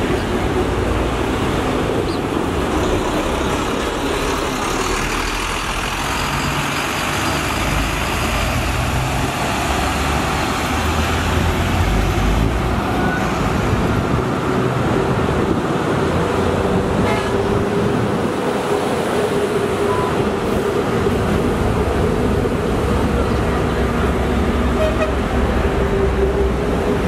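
Heavy highway traffic: buses and other vehicles passing close by, their engines and tyres making a loud, steady rush. A steady tone runs through the second half.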